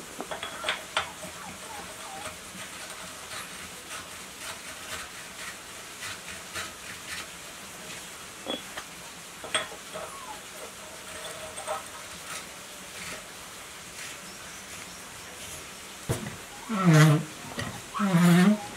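Light metallic clicks and taps of pliers and steel studs against the cast engine block as studs are threaded in by hand. Near the end come a few short, loud vocal sounds.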